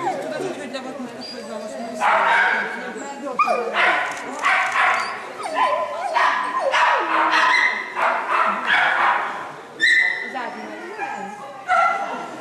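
A dog barking repeatedly and excitedly as it runs an agility jumping course, with several sharp barks through the run.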